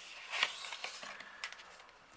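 Faint rustling and scraping of a card sleeve being handled as a metal nail stamping plate is slid out of it, with a few light clicks.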